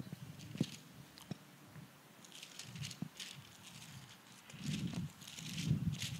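Faint handling noise picked up by a lectern microphone: light rustling and a few small sharp clicks, with a low murmur swelling up near the end.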